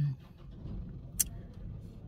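Low, steady rumble of a car cabin's background noise, with one short sharp click a little over a second in.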